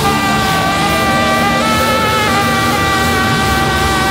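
Live instrumental rock band playing a loud sustained chord of held, slightly wavering tones that shift in pitch a couple of times, over a dense low rumble.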